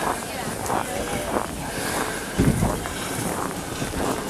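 Outdoor street ambience with faint voices of people nearby and a steady background hiss; a short low rumble of wind on the microphone comes about halfway through.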